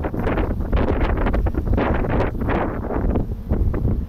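Wind buffeting the microphone in uneven gusts, a rumbling rush that swells and dips.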